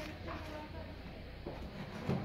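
Faint, indistinct voices in the background over a low steady hum, with a light knock about one and a half seconds in.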